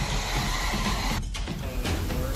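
Background music, with a brief dip about a second and a quarter in.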